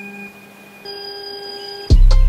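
Quiet electronic beep tones: a steady low tone, changing to a different, higher set of steady tones about a second in. Near the end a sudden loud bass hit starts music.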